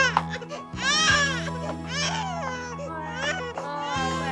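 An infant crying in several high, rising-and-falling wails, about one a second, over steady background music.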